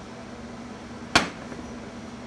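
A steady hum in the room, broken just past halfway by one sharp, short knock.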